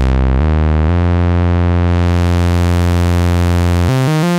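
Novation Bass Station II analogue synthesizer playing a loud, sustained low bass note rich in overtones. The pitch changes twice in the first second, then the note is held steady until it stops near the end.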